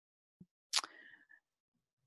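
Near silence in a pause between words, broken by a faint tick and then, about three-quarters of a second in, one short mouth noise from a person that fades within half a second.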